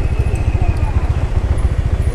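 Motorbike running along a road, heard mostly as wind buffeting the on-board camera's microphone: a steady, gusty low rumble with the engine underneath.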